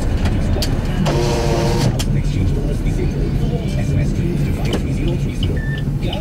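Steady engine and road rumble inside the cabin of a moving Maruti Swift, with a vehicle horn sounding once for just under a second, about a second in.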